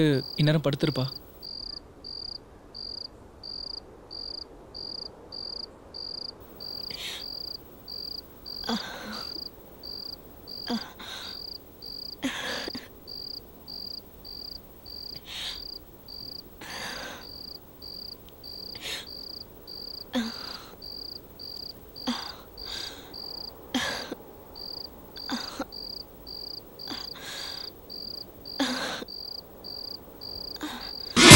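Cricket chirping steadily, a high chirp repeated a little under twice a second, as a night-time ambience bed, with irregular short soft breathy sounds every second or two over it.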